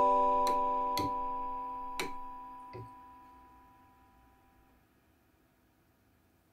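Background music ending on a held keyboard chord that fades out over about three seconds, with a few light clicks along the way. The rest is near silence.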